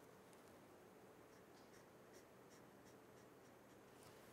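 Faint felt-tip marker strokes on paper: a run of short, quick strokes as a small patch is hatched in.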